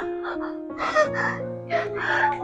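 A woman gasping and moaning a few times in short breathy bursts, over soft background keyboard music with held notes.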